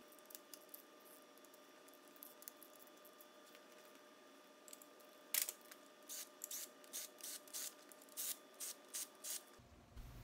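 Faint clicking of a ratchet wrench loosening the supercharger bolts on a 3800 V6. A few scattered clicks come early, then a run of short clicks at about three a second in the second half.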